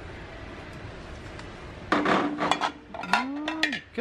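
Large glass canisters with metal lids being moved and set against each other on a metal store shelf: a cluster of sharp clinks and knocks with a short ring about halfway through, over a steady background hum.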